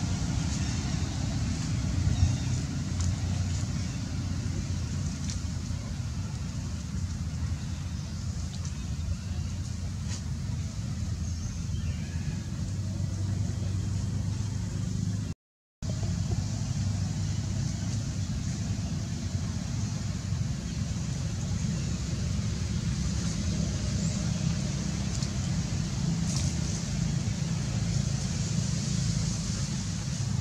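A steady low rumble of outdoor background noise, broken by a brief silent gap about halfway through.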